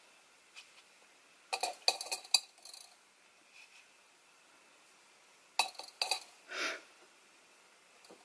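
Light clinks and taps from painting tools: a paintbrush knocked against a hard container, in two quick clusters about four seconds apart, then a short soft swish.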